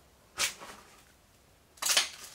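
Two footsteps scuffing on a floor littered with paper and debris, about a second and a half apart.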